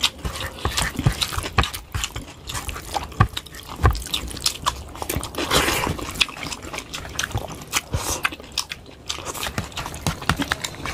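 Close-miked eating sounds: fingers squishing and mixing rice and curry gravy on plates, with chewing and lip-smacking, a dense run of irregular clicks and smacks.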